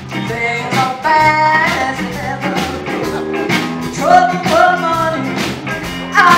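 Live rock band playing a song: electric guitars, bass and drums over a steady beat, with a woman singing lead.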